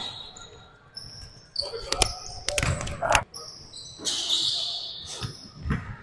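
Basketball bouncing on a hardwood gym floor several times, each bounce echoing in the large hall, with short high squeaks of sneakers on the court.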